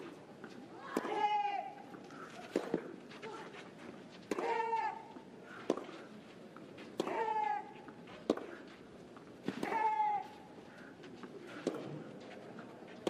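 Tennis rally on a clay court: racquet strikes on the ball come about every one and a half seconds, alternating between the two players. On each of her own shots one player gives a short, falling, high-pitched grunt, four times.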